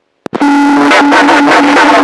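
A steady electronic buzzing tone on the aircraft radio feed between transmissions, broken by a few brief gaps, following a short dead-silent cut at the start.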